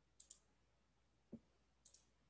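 Faint computer mouse clicks: a quick double click near the start and another near the end, with a soft low thump in between.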